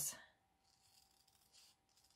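Faint, soft snips of small scissors cutting thin copy paper, a couple of short cuts about a second in and again near the end.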